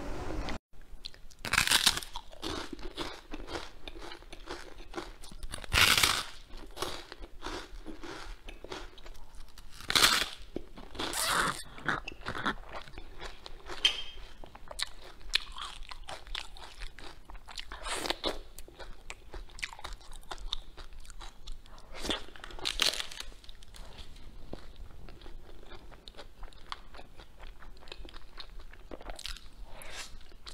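Close-miked eating: a person chewing and biting into food, with a run of soft crackly chewing noises and several louder crunchy bites scattered through.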